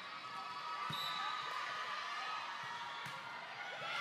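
Sneakers squeaking on a gym's wooden volleyball court, with a volleyball struck sharply about a second in and again near three seconds, over a steady background of crowd chatter in a large hall.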